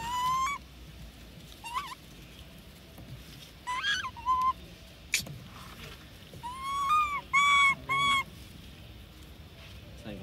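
Infant long-tailed macaque giving short, high-pitched coos and squeals, each rising then holding. There are about seven calls in scattered clusters, and the last three are the loudest.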